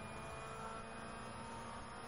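Rally car at speed on a gravel road, heard from inside the cockpit as a steady drone with a constant hum, holding even through a straight.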